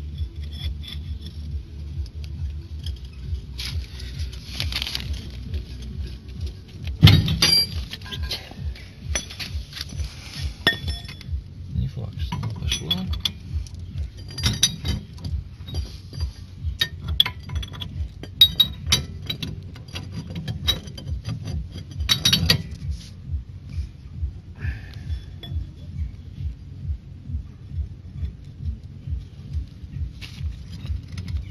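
Metal clinks and knocks of a 41 mm ring spanner with a pipe extension on a Ford Sierra's front hub nut as it is worked loose, the loudest knock about seven seconds in. A steady low pulsing hum sits underneath throughout.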